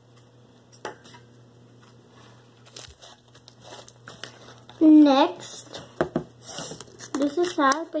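Soft pink slime being stretched, folded and squished by hand, giving scattered clicks and crackles that grow busier toward the middle. A child's voice breaks in loudly about five seconds in and again near the end.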